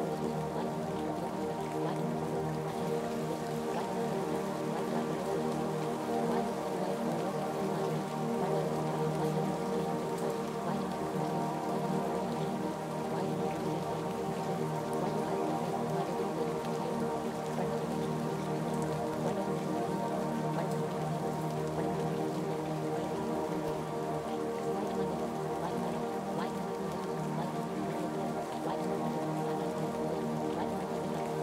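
Soft ambient music of sustained, steady tones layered over a continuous rain sound.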